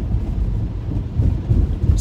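Low, uneven rumble of tyres on a wet road, heard inside the cabin of a Tesla electric car moving at about 25 mph.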